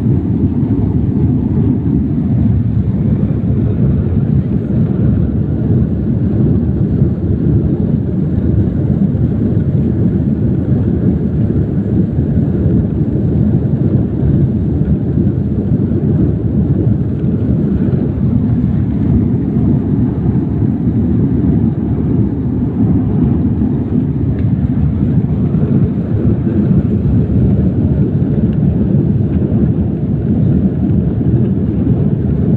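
Jet airliner cabin noise while the aircraft rolls along the runway: a loud, steady, deep rumble of the engines and the wheels on the runway, heard from inside the cabin.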